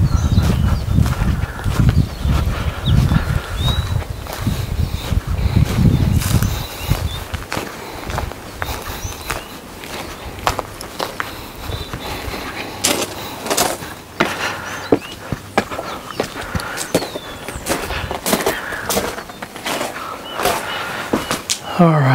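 Wind buffeting the microphone for about the first six seconds, then footsteps crunching on gravel and mulch as short, irregular clicks, with a few bird chirps.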